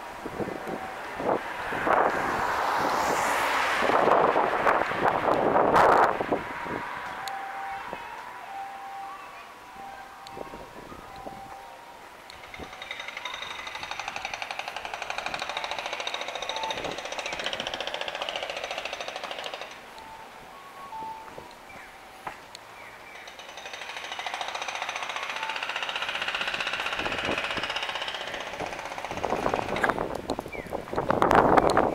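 Music played over a shop or street loudspeaker. It swells up and fades away twice as it is passed, following a row of short, even beeps. In the first six seconds a loud rush of noise covers everything.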